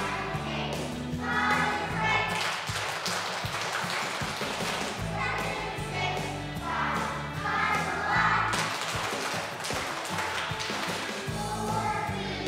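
Children's choir singing a song over instrumental accompaniment that holds steady low notes, the sung phrases swelling and fading every second or two.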